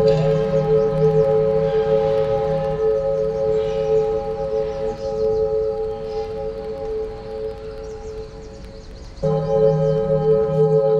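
Meditation music built on a sustained singing-bowl tone over a low drone. The ringing slowly fades, then sounds again, full strength, about nine seconds in.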